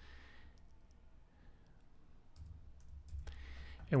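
A few faint, scattered clicks from a computer keyboard and mouse as the last characters of a form entry are typed.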